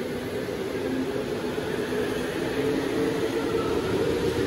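Go-karts running around an indoor track: a steady drone with a low, even hum and no changes in pitch.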